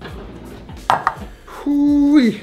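Chef's knife slicing an onion thin on a wooden cutting board: two sharp knocks of the blade on the board about a second in, over background music. A loud held tone comes in near the end.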